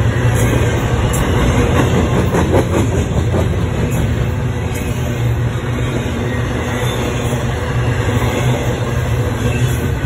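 Double-stack container well cars of a freight train rolling past close by: a loud, steady rumble of steel wheels on the rails.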